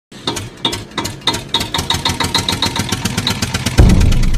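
Logo intro sound effect: a series of sharp ticks that speed up steadily, ending in a deep low hit just before the logo appears.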